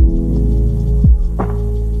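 Lo-fi hip-hop instrumental: a deep bass line and sustained chords under a slow beat. A kick drum lands at the start and again about a second in, followed by a sharper hit.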